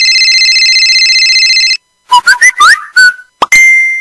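Electronic telephone ringtone sound effect: a loud trilling ring lasting about two seconds. A quick run of short rising chirps follows, then a steady beep starting near the end.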